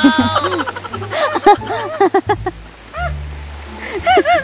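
A voice crying out "oh no!" in high, wavering, sing-song calls, with music underneath.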